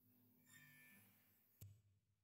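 Near silence with a faint low hum, broken by a faint glassy rub about half a second in and a single soft click near the end as a glass hourglass is set down on a felt mat.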